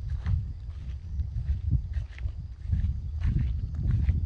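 Low, uneven rumble of wind buffeting a phone's microphone outdoors, with a few faint soft taps.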